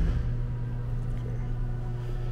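Steady low mechanical hum with a few faint steady tones in it, unchanging throughout; no distinct knock or event.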